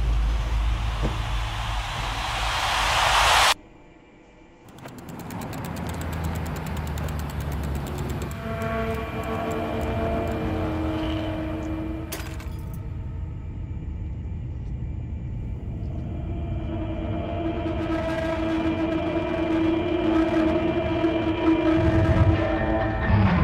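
Crowd cheering for about three and a half seconds, cut off abruptly. After a moment's quiet, a low ominous synth drone swells in and builds, with several steady held tones.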